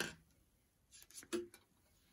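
Mostly quiet, with a few faint clicks about a second in from a metal circular knitting needle and its cord being pulled back through the stitches.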